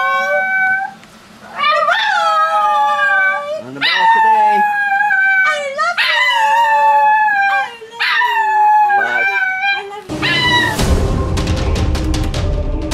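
A small dog howling along with a woman's howls: about five long howls, each held for a second or two. Music starts about ten seconds in.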